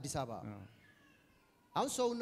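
A man speaking through a microphone and PA. He breaks off briefly, and in the pause a faint, high, wavering cry is heard before his speech resumes near the end.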